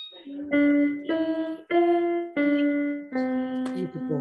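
Electronic keyboard with a piano voice playing a slow single-note melody, one note at a time, stepping up and then back down, about six notes in all. It is heard over a video call.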